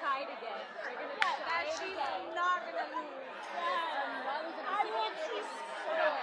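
Many voices talking over one another, a general chatter of conversation, with one sharp click about a second in.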